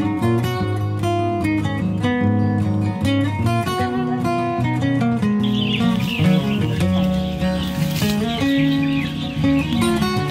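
Background music led by acoustic guitar. From about halfway, birds chirping can be heard beneath it.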